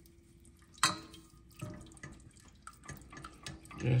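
Milk being poured in a thin stream into a stainless steel saucepan while a whisk stirs it into the butter and cornstarch, with faint clicks of the whisk against the pan and one sharper tap about a second in.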